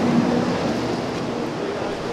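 Steady rush of city street traffic noise, with a low engine hum underneath.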